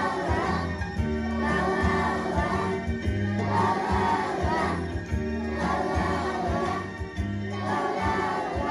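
A group of young children singing together over a recorded accompaniment with a steady bass line and beat.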